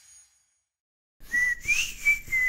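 After about a second of silence, a person whistles a held high note that lifts briefly in pitch and settles again, with a few faint knocks underneath.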